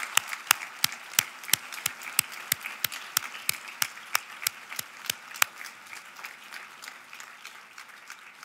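An auditorium audience applauding, with one person's sharp claps close by standing out at about three a second until they stop a little past halfway; the applause then dies down toward the end.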